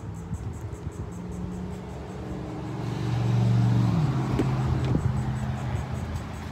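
A passing road vehicle: a low engine hum that swells about three seconds in, then drops in pitch and fades. Two light clicks follow near the end.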